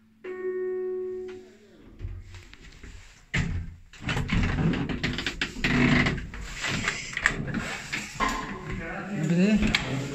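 Lift arrival chime: a single pitched tone, about a second long, just after the start. About three seconds in comes a sharp clunk as the car door is unlatched, followed by the rattle and scrape of the hinged door being pushed open.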